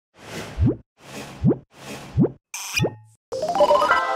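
Intro sting sound effects: four quick rising bloops about a second apart, each a short swell of noise ending in an upward-sliding tone, the last with a bright shimmer on top. Near the end a music jingle starts with a quick run of rising notes.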